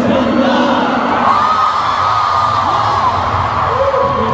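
Large arena concert crowd cheering and screaming, several long high-pitched screams standing out over the roar through the middle.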